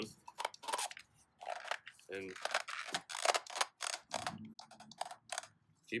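Irregular crackling and crunching clicks as a paper cartridge oil filter element is twisted onto its plastic filter housing cap by gloved hands.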